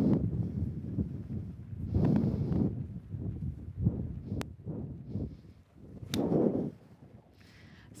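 Gusty wind rumbling on the microphone, with two sharp clicks a little under two seconds apart, as a golf wedge strikes a ball off a range hitting mat.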